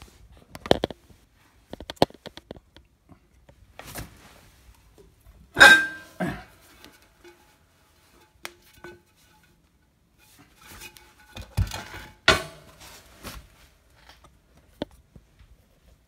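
Scattered metallic knocks, clicks and clatter as the steel magnet rotor plate of a home-built axial flux generator is worked off its threaded shaft and laid on the floor. The loudest knock comes about six seconds in, with another pair of knocks near twelve seconds.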